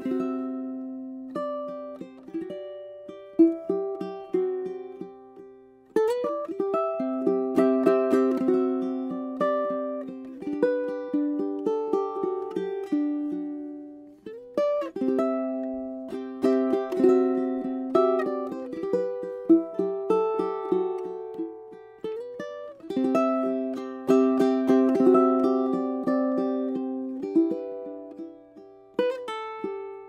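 Kamaka Jake Blue tenor ukulele with a koa top, back and sides, played solo fingerstyle: a plucked melody over chords, with sharp chord attacks, in phrases that die away every several seconds before the next begins.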